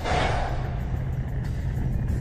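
A whoosh sound effect that swells at the cut and fades over about a second and a half, over a steady low rumbling music bed.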